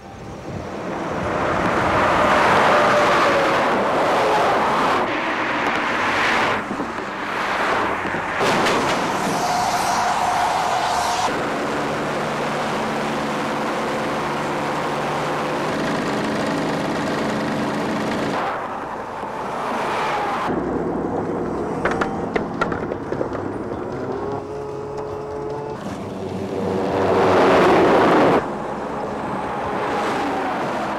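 A string of short work-zone recordings cut one after another: motor vehicles and heavy construction machinery running and passing, the sound changing abruptly every few seconds. A steady engine hum holds for several seconds in the middle, and a few sharp clicks come about two-thirds of the way through.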